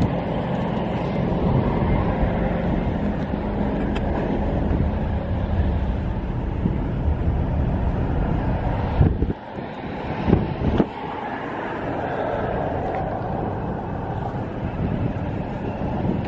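Wind rumbling on the microphone, with a steady low hum beneath it. The rumble drops out suddenly about nine seconds in, with a few short knocks, then comes back.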